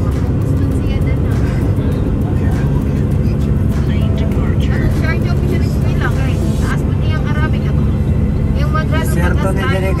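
Steady road and engine rumble inside a moving car's cabin, with voices and music over it.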